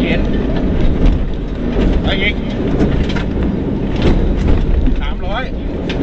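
Inside a rally car's cabin at speed on a dirt stage: engine and drivetrain running under a loud, steady rumble of tyre and road noise, with scattered knocks from the rough surface.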